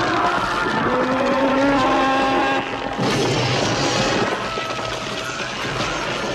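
A monster's long, pitched shriek, then an abrupt cut about three seconds in to a man screaming through a harsh, noisy din: horror-film creature effects.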